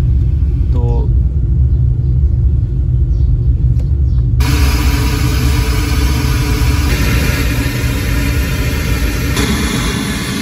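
Repaired Sony DAV-DZ810 home theatre system playing through its speakers and subwoofer in a sound test, now giving output after its missing-sound fault: a steady deep bass rumble, with a loud hiss joining about four and a half seconds in.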